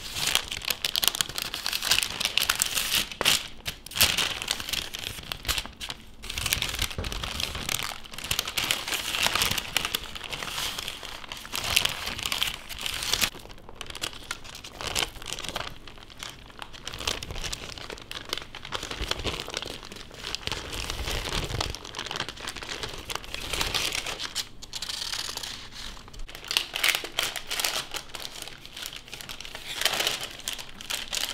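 Baking paper crinkling and rustling in irregular bursts as it is lifted and rolled around a sheet of raw minced beef.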